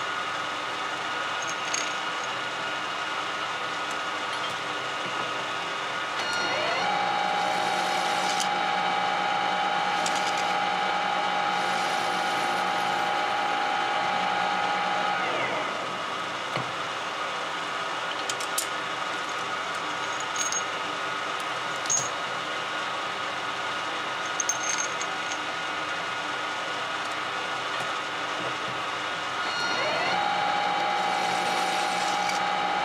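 Small metal lathe spindle starting up about six seconds in, running with a steady whine for about eight seconds, then running down. A few sharp metallic clinks follow as parts are handled, and the spindle starts up again near the end, over a steady workshop machine hum.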